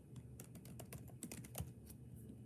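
Faint typing on a keyboard: irregular key clicks that come faster in the second half.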